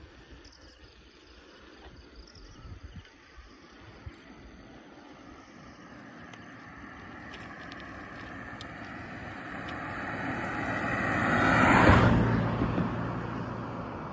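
A car approaching and passing by on the road: its engine and tyre noise grow louder, peak near the end, then fade.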